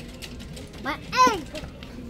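A run of quick, light clicks and rattles, with a child's short, high-pitched word about a second in.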